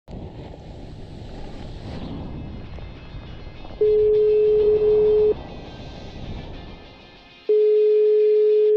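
Telephone ringing tone heard down the line as a call is placed: a steady low beep lasting about a second and a half, then the same beep starting again near the end, much louder than everything else. Under it, the rushing wash of breaking surf in the first seconds, and faint music.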